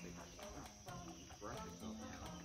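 Steady high-pitched insect chorus trilling in the background, with faint voices in the latter part.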